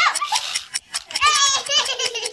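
Young children laughing and giggling in high voices, with a rapid, even ticking running underneath.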